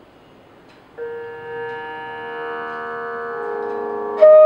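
A steady sruti drone for Carnatic music begins about a second in: one unchanging chord of sustained tones that swells slightly, setting the pitch for the flute. The first second is quiet room tone.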